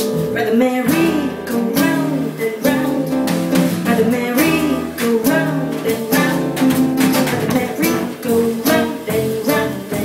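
Live band in an instrumental passage between sung lines: acoustic guitar playing with plucked double bass and percussion.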